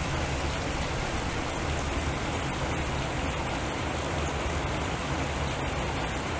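Steady, even rushing water-like noise, like rain or a stream, from a water sound sculpture, with a low hum underneath.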